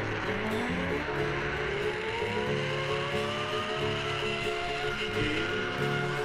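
Background music over the whine of a zip-line trolley running along its steel cable, climbing steadily in pitch as the rider picks up speed.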